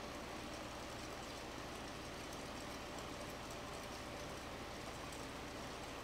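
Carlisle CC lampworking torch flame burning steadily, an even rushing noise with no changes.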